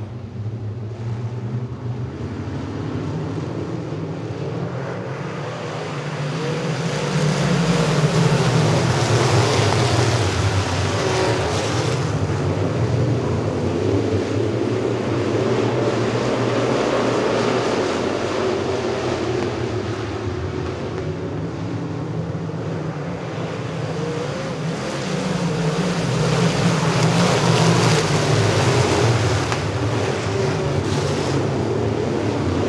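A field of dirt late model racecars with V8 engines running together around a dirt oval. The engine noise swells and fades as the pack comes around: it is loudest about eight to twelve seconds in, eases off around twenty seconds, and builds again near the end.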